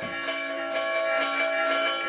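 Church bells ringing, their tones hanging on and overlapping, with fresh strikes about a second in.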